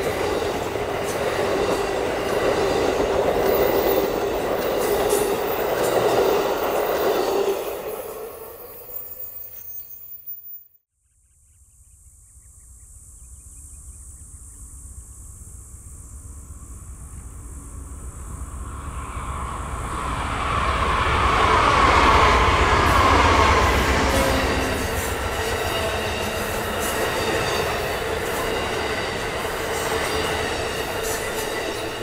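An Amtrak Superliner passenger train rolling past and fading away as its last cars go by. After a sudden cut the train is heard approaching from a distance, growing louder until its cars pass close by with steady wheel-on-rail noise and some squealing.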